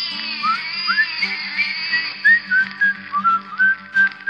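Instrumental break in a song: a whistled tune of short rising notes over a steady, pulsing backing beat.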